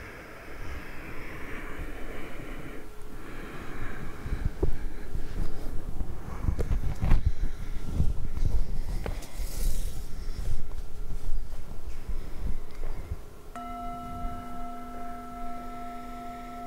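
Rustling, shuffling and small knocks of body movement picked up close on a clip-on microphone. Near the end a brass singing bowl is struck once with a wooden striker and rings on in a steady tone of several layered pitches.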